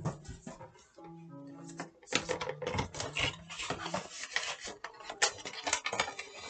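Handling noise from a black plastic-and-cardboard item being picked up and turned over in the hands. After about two seconds it becomes a dense run of rustles, clicks and light knocks.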